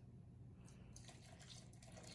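Faint pouring of warm cream and milk from a saucepan into a glass bowl of melted chocolate, barely above near silence.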